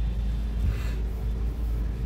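Car engine running at low speed as the car creeps into a parking spot, heard from inside the cabin as a steady low rumble.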